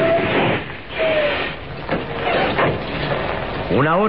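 Radio-drama sound effect of a heavy truck's engine running as it drives along, dipping in level partway through.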